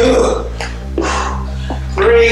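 A man's forceful voiced exhales of effort, one at each kettlebell goblet squat rep, about two seconds apart, over background music with a steady bass.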